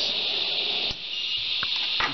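Power inverter running just after switch-on, heard as a steady high hiss, with a single sharp click about a second in.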